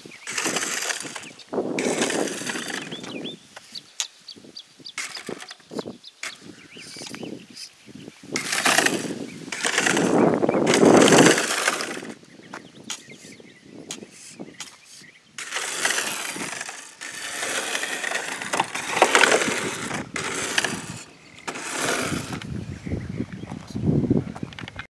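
Electric RC drag car with a brushless motor driven in spells of throttle, its too-low chassis dragging on the asphalt so the button-head screws underneath grind on the road. This comes as several loud spells of harsh scraping noise, with quieter gaps between them. The dragging makes the car go in circles.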